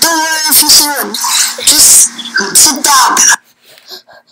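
A boy's loud wordless cries with gagging, choking noises, acted as if being strangled; the cries stop about three and a half seconds in.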